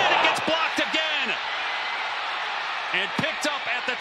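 Stadium crowd noise swelling as a punt is blocked, with short excited voices breaking through about half a second in and again near the end.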